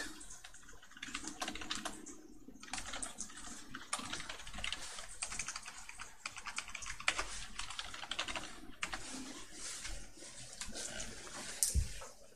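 Computer keyboard typing in runs of quick keystrokes with short pauses, and one louder thump near the end.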